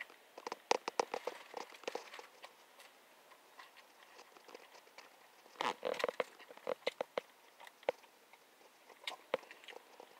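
Biting into and chewing a cheeseburger topped with fries and cheese: faint, scattered mouth clicks and soft crunches. There is a short cluster of louder crackles about six seconds in.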